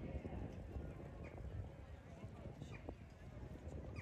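Passersby talking amid a steady patter of footsteps on pavement.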